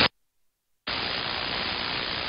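A dead gap of under a second, then steady static from an SDR transceiver's receiver on the 11-metre CB band, as the rig drops out of transmit back to receive.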